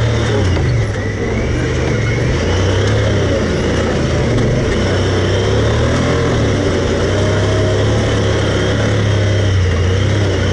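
Side-by-side UTV's engine running as it drives along a dirt trail, its note rising and dipping a little with the throttle, over steady rumble and rattle from the ride.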